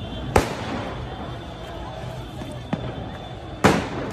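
Three sharp explosive bangs in a city street: a loud one just after the start, a smaller one past the middle, and the loudest just before the end, each echoing off the surrounding buildings.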